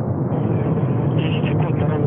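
Soyuz rocket's first stage, four strap-on boosters and the core engine, firing at full thrust during the climb after liftoff: a loud, steady rushing engine noise.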